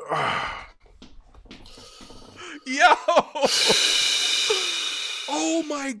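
Men laughing hard at a song: a breathy burst of laughter at the start, gliding vocal laughs near the middle, then a long high breathy squeal of laughter lasting nearly two seconds, ending in a falling exclaimed 'my God'.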